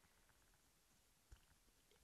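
Near silence as a Sony ECM-CG60 shotgun microphone in its shock mount is bounced around by hand, with one faint low thump a little past a second in: the shock mount lets little handling noise through.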